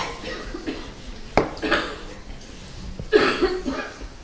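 Three short coughs, the loudest near the end.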